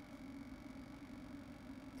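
Faint room tone: a steady low hum under a light hiss.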